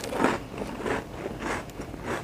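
A man chewing a mouthful of cake rusk, a dry twice-baked cake toast, close to the microphone, with a noisy chew roughly every half second.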